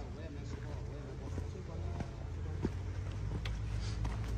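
Low, steady rumble of the Tank 300 SUV's engine as it moves slowly on the muddy off-road slope, with a few faint clicks from the track.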